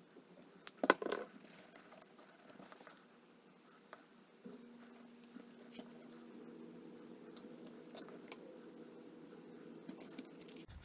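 Faint clicks and light scraping of hand work: wooden colored pencils being picked up and a stick mixing epoxy on a taped board. A low steady hum comes in about halfway through.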